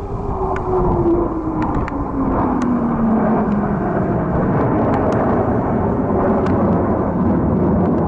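Blue Angels F/A-18 Hornet jet passing: a loud jet roar with a whine that drops in pitch over the first few seconds as the aircraft goes by, then a steady roar as it draws away.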